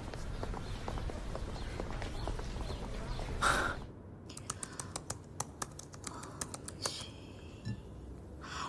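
Laptop keyboard typing: quick, irregular key clicks starting about halfway through, after a short burst of noise. Before the typing there is a low, steady background hum, and near the end a brief ringing sound.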